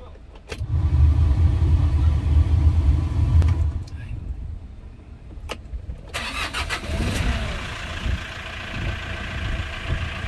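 Hyundai Porter double-cab truck's diesel engine starting: a click about half a second in, then a loud low rumble for about three seconds that settles to a steady idle. From about six seconds a broader, higher noise runs over the idle.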